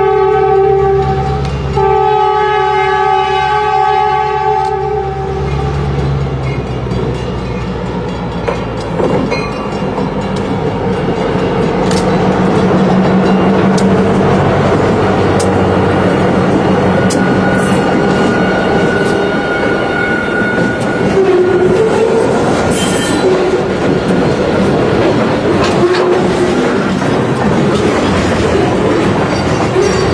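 Diesel freight train's air horn sounding two blasts: the first ends about a second in, and the second is held until about five seconds in. Then the locomotives pass close, and a long string of lumber-loaded flatcars rolls by with wheels clicking over the rail joints.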